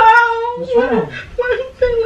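A woman's voice wailing and moaning in pretended labour pain: a long cry held at one steady pitch, breaking off and starting again several times.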